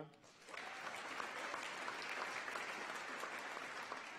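Audience applause, rising about half a second in and holding steady.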